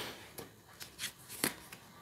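Tarot cards being handled: a card drawn from a held deck and laid on the spread, with a soft rustle and then several short, light snaps of card stock.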